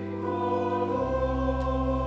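Church choir singing held chords with pipe organ accompaniment; a deep bass note joins about a second in.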